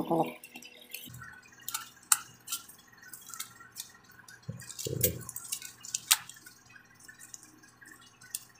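Light metallic ticks and clicks from feeler gauge blades and a piston ring against a steel cylinder liner, as the ring's end gap is checked for wear. The sharpest ticks come about two seconds in and about six seconds in.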